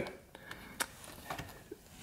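Faint handling noise from a hand gripping a corrugated rubber cable conduit: one sharp click a little under a second in, then a few softer ticks.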